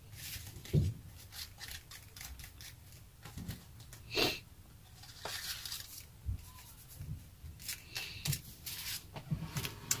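Hands rubbing and handling a paper cutout on a craft-paper-covered table: soft irregular rustles and scrapes of paper, with a light thump just under a second in and a brief louder rustle about four seconds in.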